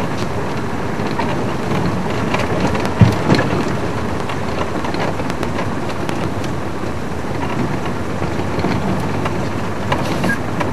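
Game-drive vehicle driving on a rough dirt track: steady engine and tyre noise with constant small rattles and knocks, and one heavy jolt about three seconds in.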